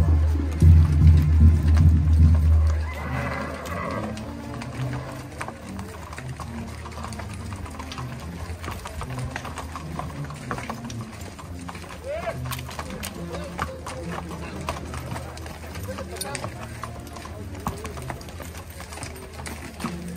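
Horses' hooves clip-clopping on a paved street as a line of ridden horses walks past. Loud music with a heavy bass plays for the first few seconds, then the hoofbeats carry on under scattered voices.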